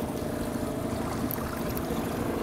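Fishing boat's motor running steadily at trolling speed, a low even drone with wind and water noise over it.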